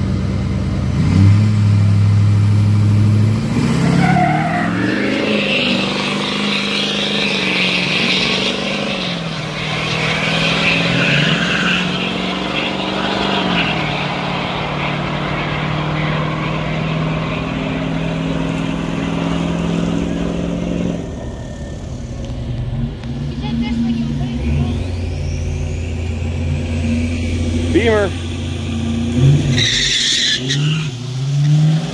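Two pickup trucks, a heavy-duty 2500 and a Ford Lariat, launching off the drag strip line and accelerating down the track: a steady engine note for a few seconds, then the engine pitch climbs and drops in steps through several gear shifts. Near the end another car idles steadily at the line.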